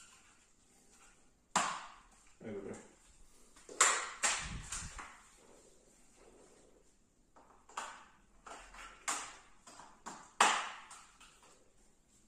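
Plastic branches of an artificial Christmas tree being handled and fitted into its trunk section, giving several sharp plastic clicks and knocks spaced a second or more apart, with a low thump about four and a half seconds in.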